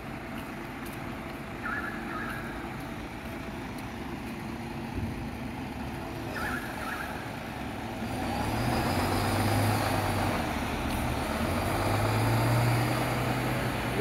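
Street traffic ambience, with a vehicle engine hum growing louder from about eight seconds in. Two short beeps sound, about two seconds in and again about six and a half seconds in.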